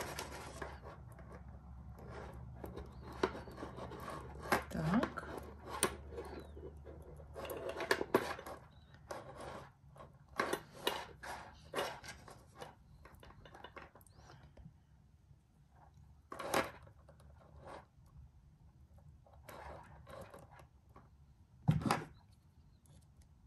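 Small irregular clicks, taps and rubbing of metal jewellery findings, chain and beads being handled as a bead is fitted onto an extender chain. The clicking is busiest in the first half and thins out later.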